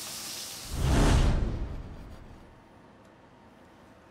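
Hot fat sizzling in a frying pan, cut off about a second in by a loud, deep whoosh that swells and fades over about a second, like an editing transition effect. After that, faint room tone.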